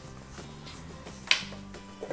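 Faint background music with one sharp clink about a second in, as a kitchen item is set down on the worktop.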